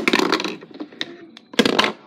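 Hard plastic toy figure clattering and knocking close to the microphone in two loud bursts, the second about a second and a half in.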